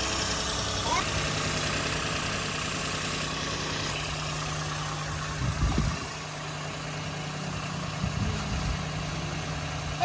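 Steady low mechanical hum of a running motor, with a brief louder rumble a little past the middle.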